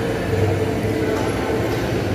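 Steady low rumble and hum of a large, echoing covered market hall, with no distinct event standing out.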